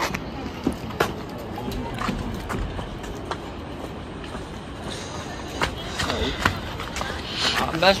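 Outdoor background with faint chatter of other people and a few light clicks spread through it; a voice speaks briefly near the end.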